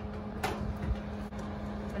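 A metal muffin tin being slid onto a wire oven rack, with one sharp metallic clack about half a second in and a fainter tick later, over a steady low hum.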